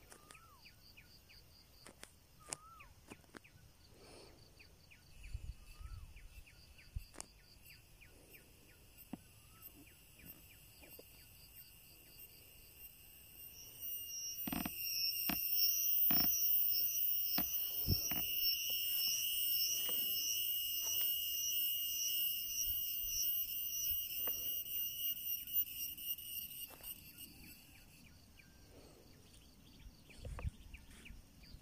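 A cicada starts a loud, high, pulsing buzz about halfway in and keeps it up for about thirteen seconds before stopping. Faint bird chirps and a few sharp clicks come before and during it.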